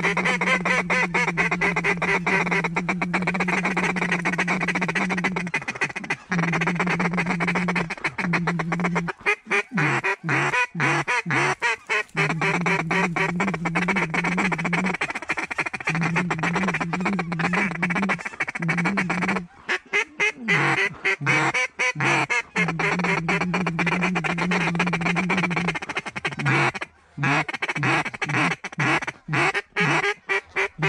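Duck calls blown in quick succession: rapid chuckling and quacking, used to pull in circling ducks, with a steady low drone underneath that breaks off several times.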